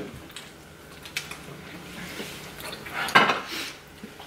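Light clinks and taps of plates and tableware on a table, a few separate clicks, with a louder noisy sound lasting about half a second about three seconds in.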